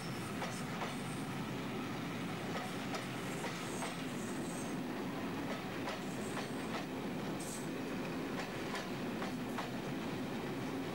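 Passenger coaches running past at speed: a steady rumble of wheels on the track, with irregular clicks as the wheels cross rail joints and a few brief high squeals from the wheels.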